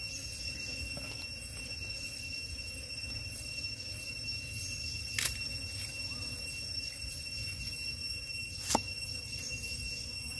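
Steady high-pitched insect drone, with two light knocks on a chopping board as ingredients are handled, about five seconds in and again near the end.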